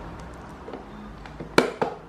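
Steel flat-blade screwdriver tip clicking against the hard plastic retaining clip of a fan base, with two sharp clicks near the end as the tip is seated in the clip.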